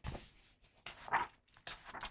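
Pages of a thick hardcover comic omnibus being flipped, a short paper rustle at the start, then a brief high-pitched sound about a second in.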